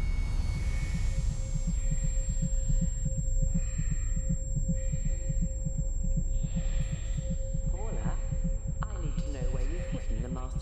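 Film sound design for a spaceship's electronics bay: a steady low mechanical hum with a rapid low throbbing pulse under it, and a thin steady electronic tone on top. Soft hissing swells come and go. Near the end there are wavering, voice-like sounds.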